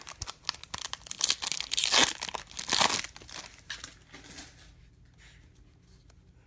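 A foil baseball-card pack wrapper being torn open and crinkled, loudest in the first three seconds. Fainter rustling follows as the cards are handled.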